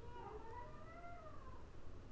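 A faint drawn-out call in the background, its pitch rising and then falling over about a second and a half.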